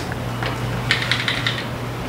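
Faint rustling and a few small clicks, as of clothing being handled and put on, over a steady low room hum.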